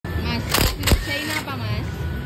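Cordless impact wrench on the kick-start lever bolt of a Yamaha Mio scooter, hammering in two short bursts within the first second. A voice can be heard alongside.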